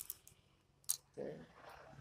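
A single sharp click about a second in as the pocket modem is handled in the hands, with a brief rustle of handling at the start.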